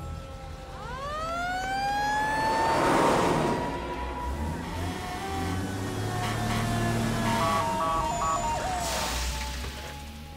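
An emergency vehicle siren wails once: it rises steeply about a second in, then holds and slowly falls away over several seconds, over background music.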